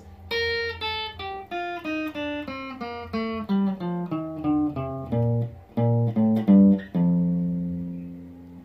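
Clean electric guitar through an amplifier picking a highlife melody line in B flat, a quick run of single notes mostly stepping downward, ending with a low note left to ring and fade.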